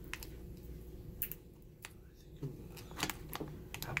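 Crinkling and crackling of a shiny plastic blind-bag wrapper being pulled and worked open by hand, a scattering of short sharp crackles.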